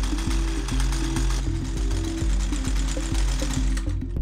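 Warm McCulloch trimmer's small two-stroke petrol engine running steadily with the choke at half, left to run for a few seconds after starting.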